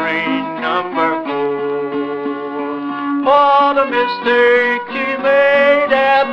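Instrumental break of an old-time country ballad: a fiddle plays the melody in held, sliding notes over plucked string accompaniment.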